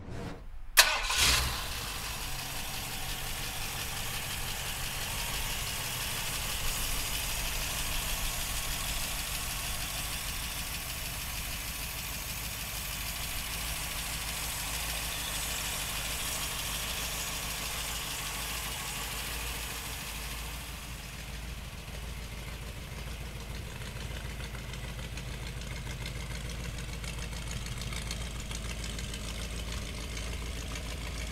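Carbureted 302 small-block Ford V8 of a 1968 Ford Bronco, with a Holley four-barrel carburettor, starting about a second in and then idling steadily.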